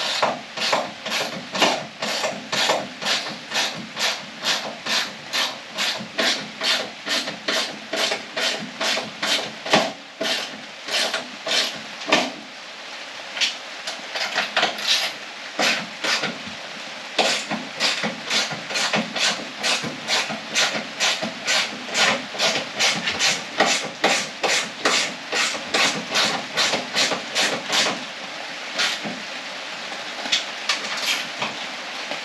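Hand ratchet wrench worked back and forth in quick, even strokes, about two a second, each stroke giving a short rasping burst of clicks, with a brief pause about twelve seconds in: tightening the nuts on a front strut's top mount.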